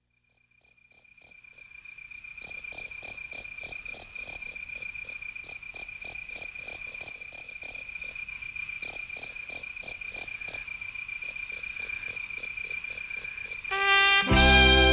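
Recorded chorus of night insects, crickets chirping: a steady high trill under rhythmic chirps about three a second. It fades in over the first two seconds, and brass-led music comes in at the very end.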